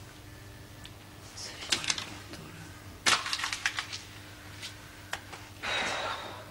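Paper notes rustling and crinkling in three short bursts of crackles as they are picked up and handled, over a faint steady hum.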